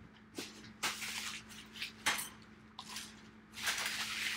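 Hands opening a cardboard trading-card box and handling the cards inside: a series of short rustling scrapes as the lid slides off and the card stack is lifted out.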